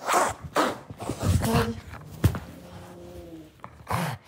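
Fabric rustling and handling noise as a kitten is moved from a person's arms onto a sofa, in several scuffling bursts, with one sharp click a little past halfway.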